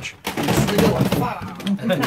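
Indistinct, overlapping talking from several people in a room, none of it clear enough to make out.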